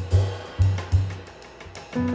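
Acoustic jazz drum kit played solo with sticks: loud, low, pitched drum strokes ring under cymbal wash through the first second, then thin out to softer, sparser strokes.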